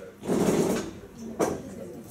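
Room noises: a half-second noisy burst a quarter second in, then a single sharp knock about a second later.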